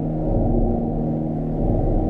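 Ambient drone music: a steady low rumble with several held tones layered over it, without pauses or strikes.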